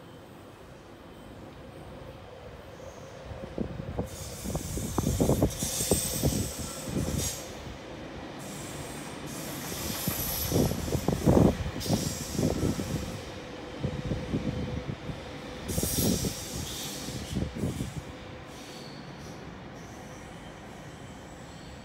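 Electric suburban passenger train moving through the station on a nearby track, its wheels knocking and clattering over rail joints and points. There are bursts of high-pitched wheel squeal, loudest near the middle of the stretch. The noise builds a few seconds in and dies away shortly before the end.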